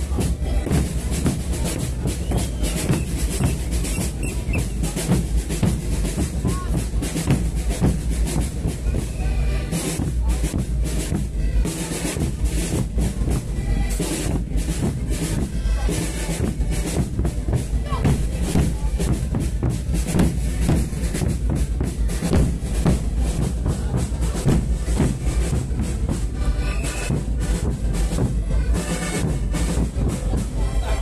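A street band of large rope-tensioned bass drums beaten with padded mallets, playing a loud, driving rhythm of rapid, continuous strikes.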